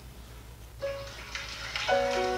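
Piano introduction from a stage performance: a first note just under a second in, then a chord near the end, over a faint steady hum.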